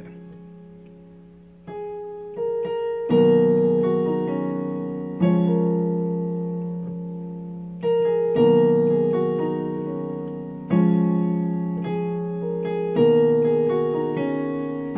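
Portable electronic keyboard on a piano voice playing slow sustained chords in F-sharp major with a melody on top, a new chord struck every two to three seconds and left to ring and fade.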